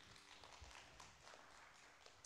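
Near silence with faint, soft scattered footsteps and shuffling.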